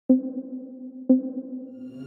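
Electronic intro music: a single synthesized ping-like note struck twice, about once a second, each with a sharp attack that rings and fades away.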